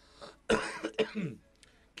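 A person coughing: two sharp coughs about half a second apart, each trailing off with a short falling vocal sound.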